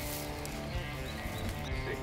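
Quiet background music with steady held notes.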